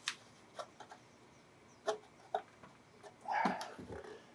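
A few light clicks and taps of a CB radio's metal top cover being handled and lifted off its chassis, with a short louder rub or grunt-like sound a little after three seconds in.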